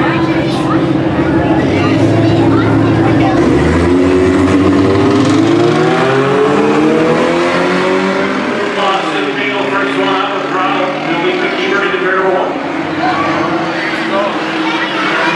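Race cars in a four- and six-cylinder class, a VW and a Chevrolet Cavalier, held at revs on the start line, then launching about four seconds in and accelerating away. The engine note climbs steadily, drops sharply at a gear change, then climbs again. Crowd chatter from the grandstand runs underneath.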